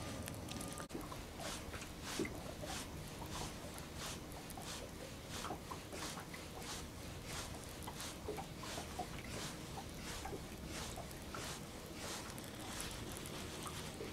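Faint, regular ticking about two to three times a second from a fishing reel being cranked as a blade bait is retrieved, over a low steady background.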